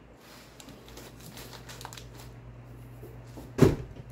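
Vinyl LP jackets and sleeves being handled and swapped: soft rustling and light clicks, then a single sharp thump about three and a half seconds in, over a steady low hum.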